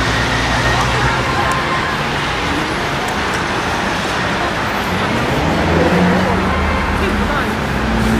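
Busy city street traffic: a steady noise of passing vehicles with a low engine hum rising near the end, over background voices.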